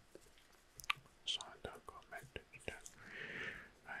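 Faint whispering close to a microphone, scattered with soft short clicks, and one longer breathy whisper a little after three seconds in.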